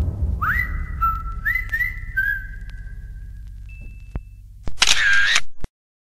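Edited-in sound: background music dies away on a low fading note with a few rising whistle-like glides, then, about five seconds in, a short camera-shutter sound effect, followed by an abrupt cut to silence.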